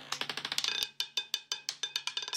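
Roulette ball clattering over the frets and pockets of a spinning roulette wheel as it drops to settle: a rapid, irregular run of sharp clicks, several a second, with a light ringing.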